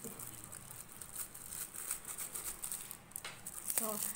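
A hand in a thin plastic glove crumbling lemon square cake pieces over a dish: faint, scattered crinkling and light ticking as the crumbs are broken and dropped.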